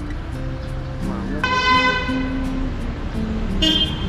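Background music with a steady low melody; over it a vehicle horn sounds once for about a second, about a second and a half in, and a shorter toot follows near the end.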